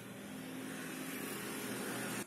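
A steady mechanical hum with a rushing noise, growing gradually louder.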